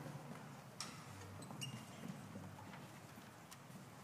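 Quiet concert-hall room noise with no music playing, broken by a few faint scattered clicks and knocks.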